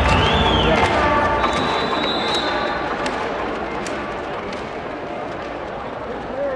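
Sports-hall crowd chatter and murmur, slowly getting quieter, with scattered sharp knocks. Music fades out in the first second.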